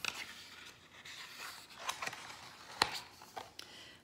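A page of a large hardback picture book being turned by hand: paper rustling and scraping, with a sharp click about three seconds in.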